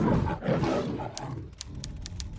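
A lion roar sound effect, rough and loud at first and fading through the first second and a half. About a second in, a quick, irregular run of typewriter key clicks begins.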